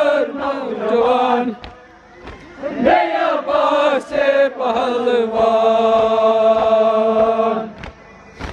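Male voice chanting a Kashmiri noha (Shia mourning lament) through a microphone, with other mourners' voices joining in. It breaks off briefly about two seconds in and ends on a long held note near the end. Faint regular thuds of chest-beating (matam) run beneath the chant.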